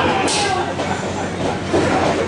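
Live crowd at a pro wrestling match chattering and shouting, with one sharp hit about a quarter second in.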